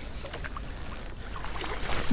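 A hooked trout splashing and thrashing at the water's surface beside the boat as it is played in, with a louder splash near the end.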